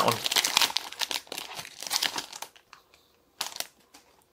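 Foil Pokémon trading-card booster pack wrapper crinkling as it is torn open and the cards are pulled out: dense crackling for the first two and a half seconds, then a short rustle near the end.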